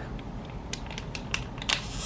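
Plastic eye-mask sachet crinkling as it is handled in the fingers: a run of small, sharp crackles and clicks, loudest near the end.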